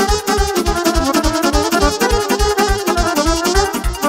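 Live instrumental dance music: a Roland digital accordion playing a quick melody with keyboard accompaniment over a fast, steady electronic drum beat.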